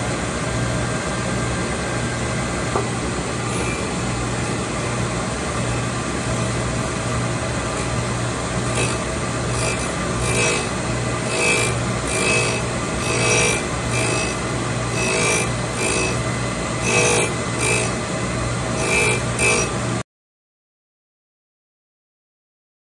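Surface grinder and its rotary phase converter running with a steady hum; from about nine seconds in, the grinding wheel bites the steel Mauser receiver ring in repeated short bursts, one or two a second, as the action is rotated against the wheel. The sound cuts off suddenly near the end.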